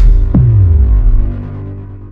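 Logo-sting sound effect: a deep bass boom with a tone that sweeps down in pitch about a third of a second in, then fades out over the next two seconds.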